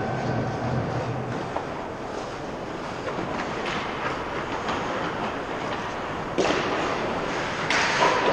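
Ice hockey on an indoor rink: the rink's steady background noise with light clicks of sticks and skates on the ice. Two loud, short scraping bursts come about six and a half seconds in and near the end, like skate blades biting into the ice close by.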